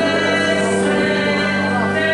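A hymn sung by a choir with accompaniment, held chords moving slowly from note to note: church music after the dismissal at the end of Mass.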